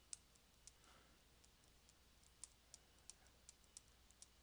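Near silence broken by faint, irregular clicks of a stylus tapping on a tablet screen while handwriting, about ten of them.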